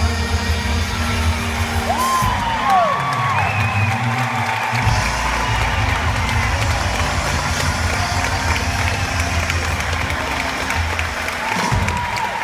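Concert audience applauding and cheering as a song ends, with a couple of rising-and-falling whoops about two seconds in. Low sustained music continues underneath.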